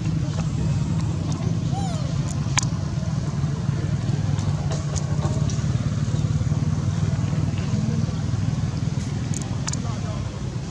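A steady low drone, like an engine running nearby, that holds level throughout. Faint high clicks and a brief chirp sound over it.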